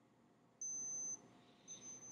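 Axencare digital thermometer beeping: two steady high-pitched beeps about half a second long each, the first starting just over half a second in. The beeps signal that the temperature reading is finished.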